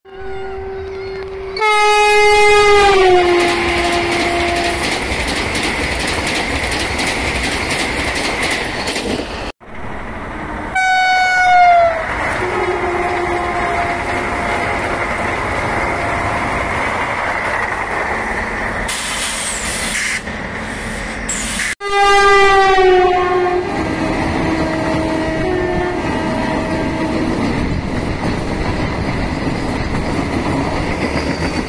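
Vande Bharat Express electric trainsets racing past at speed. Each sounds its horn three times in separate cuts, and every blast drops in pitch as the train goes by. Between the blasts is a steady loud rush and rattle of wheels on the track, and the sound cuts off abruptly twice between clips.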